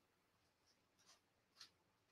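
Near silence: faint room tone, with two brief faint scratchy sounds about a second and a second and a half in.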